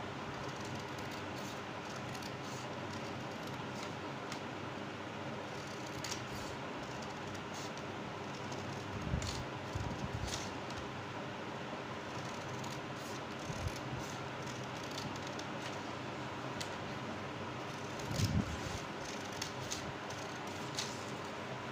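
Scissors snipping slits into a sheet of craft paper, short crisp cuts at irregular intervals, over a steady background hum. A few low bumps of the paper and hands against the table come in the middle and near the end.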